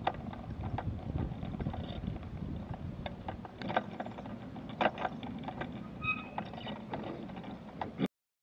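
Mobility scooter rolling along a rough paved path: a steady low rumble of wheels and motor with frequent clicks and rattles, a brief high tone about six seconds in, and the sound cutting off suddenly at the end.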